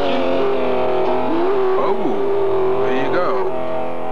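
Live punk rock band music ringing on in a sustained chord, with a voice that slides in pitch and then holds one long note through the middle.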